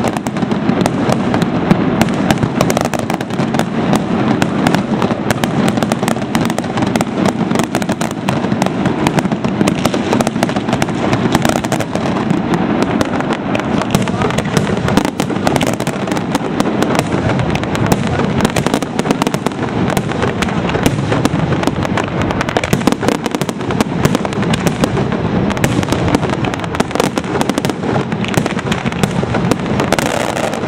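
Fireworks display: a dense, unbroken barrage of bangs and crackling from shells bursting in quick succession.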